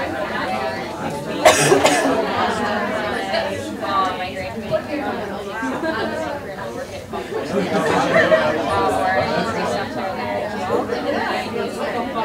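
Chatter of many people talking at once in several overlapping conversations in a room, with a short sharp noise about a second and a half in.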